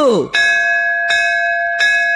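A bell struck three times, each strike ringing on without fading away between strokes. It is the metal bell-like ring of a sound effect laid after the spoken "I love Hindu".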